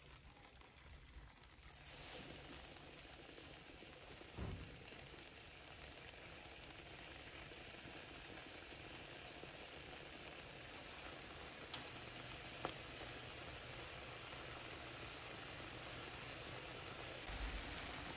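Egg-battered bread frying in hot oil in a pan: a steady, low sizzle that starts about two seconds in and grows slowly louder.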